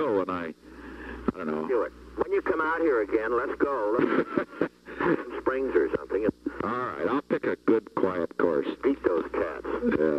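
Men's voices talking over a telephone line, from a recorded 1973 White House phone call, thin and telephone-quality.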